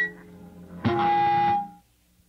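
End of a post-hardcore rock song. The full band drops out into a brief lull, then hits one last loud electric guitar chord about a second in, holds it for under a second and cuts it off sharply.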